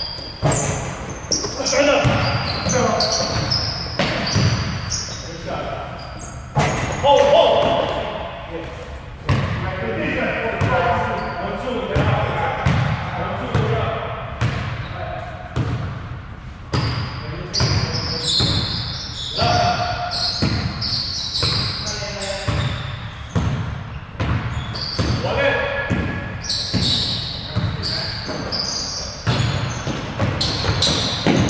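A basketball bouncing repeatedly on a hardwood gym floor during play, with sneakers squeaking and players' voices calling out, all echoing in a large gym.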